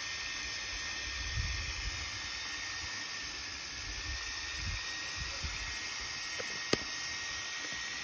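Steady hiss of water jetting through a small hose-fed micro hydro generator and spraying out onto concrete, with a faint steady high tone under it. A single sharp click comes about two-thirds of the way in.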